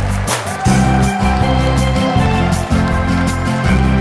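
Wersi Sonic OAX 500 organ playing a lively pop tune, melody and chords on the manuals over a steady bass line. There is a brief break about half a second in, then a new phrase begins.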